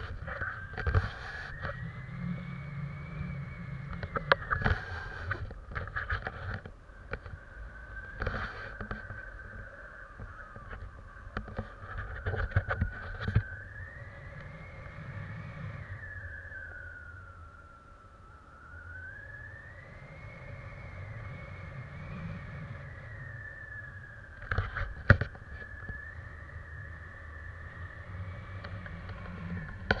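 Wind buffeting the microphone of a selfie-stick camera in flight under a tandem paraglider, a low rushing rumble with scattered gusty knocks. A thin whistling tone runs throughout, slowly rising and falling in pitch.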